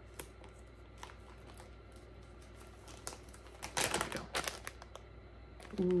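Clear plastic packaging of a wax melt bar being handled and opened: scattered light clicks and crinkles, with a louder rustle about four seconds in.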